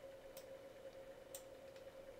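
Near silence: a faint steady hum with a few soft computer mouse clicks.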